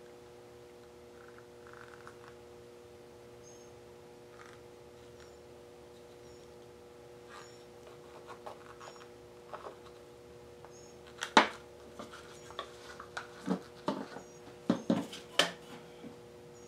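Quiet room with a steady low electrical hum and faint small high chirps about once a second. Then, from about eleven seconds in, a run of sharp clicks and knocks as a paint cup and a plastic sink strainer are handled on a plastic-covered work table. The first click is the loudest.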